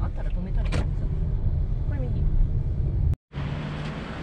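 Low rumble and tyre noise of a car driving on wet streets, heard from inside the cabin, with faint voices. It cuts off abruptly about three seconds in, and a steady hiss follows.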